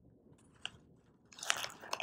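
Foil packet of baking soda crinkling and rustling as a plastic spoon scoops powder from it, starting about one and a half seconds in after a near-quiet stretch with one faint tick.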